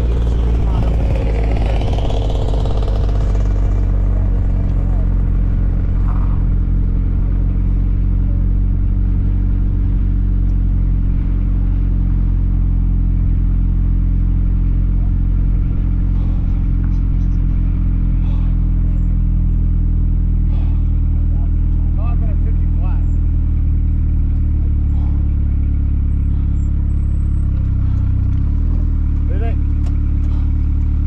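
Turbocharged 2.34-litre Duratec four-cylinder of a Mazda RX-8 running at low speed, a steady low drone heard from inside the car as it creeps along. Near the end the note drops and wavers as the car comes to a stop.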